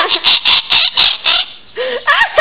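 Blue-fronted amazon parrot calling: a quick run of short, shrill calls, about four a second, then one lower call near the end.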